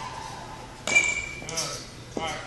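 A metal baseball bat striking a ball off a batting tee: one sharp, ringing ping about a second in.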